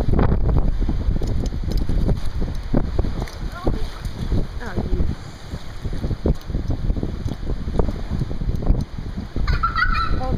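Wind buffeting the microphone, with irregular splashing of feet and a dip net in shallow water. A child's high-pitched voice comes in near the end.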